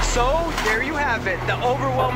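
Indistinct talking over a steady low hum, with no backing beat.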